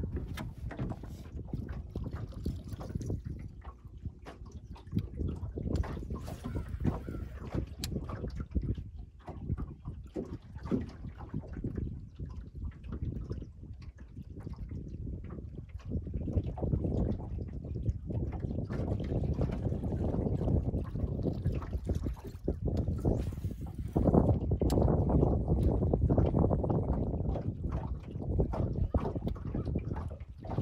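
Wind buffeting the microphone and water lapping against a small fishing boat's hull, growing louder about halfway through and again later on.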